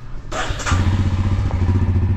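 Motorcycle engine starting: a brief crank that catches about half a second in, then settling into a steady, evenly pulsing idle.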